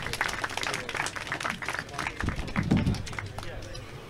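Handling clicks and knocks from a handheld microphone being laid down on a table and people shifting as they get up from their chairs. A short bit of voice comes in about two and a half seconds in.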